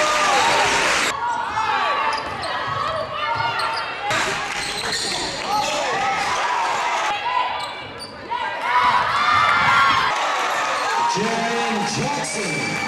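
Basketball game audio in a gym: a ball bouncing and many short sneaker squeaks on the court, over crowd noise in a large echoing hall. A burst of crowd noise cuts off about a second in.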